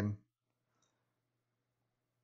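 A man's voice finishing a word, then near silence with only a faint, steady low hum.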